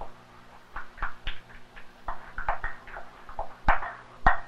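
A stirring utensil tapping and clinking against a glass mixing bowl as waffle batter is mixed, in irregular taps about three a second, some ringing briefly.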